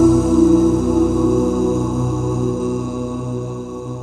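The song's closing chord, sung by layered voices, held steady and slowly fading out.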